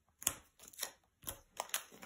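Fingers pressing small adhesive foam pads onto a card panel and handling the strip of foam pads: a handful of short, light taps and clicks.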